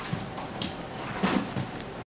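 Faint, brief voice sounds, one right at the start and another about a second and a quarter in, over steady room noise.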